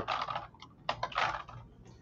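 Quick clicking and tapping at a computer desk in two short spells, the second about a second in.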